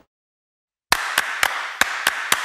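Dead silence for about the first second, then a run of sharp hand claps, about three to four a second, over a steady hiss.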